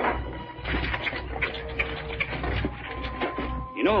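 Radio-drama sound effect of horses' hooves clopping and a wagon rolling, a loose run of clicks, with soft background music beneath.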